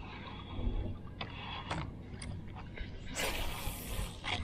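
A fishing cast: a short hiss of line running off the reel about three seconds in, after a few light clicks of handling the rod and reel, over a low steady hum.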